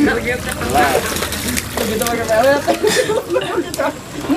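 Indistinct talk of several people, their voices overlapping and calling out without a break.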